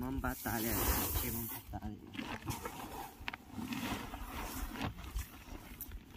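Dry threshed rice grain poured from a metal bowl into a woven plastic sack: a hissing rush lasting under two seconds near the start, under a steady low rumble.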